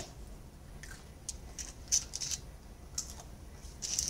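A plastic utensil working into a microwaved egg in a plastic bowl: a quiet scatter of short, soft clicks and scrapes.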